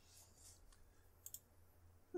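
Near silence with a low hum and two faint, quick clicks about a second and a quarter in.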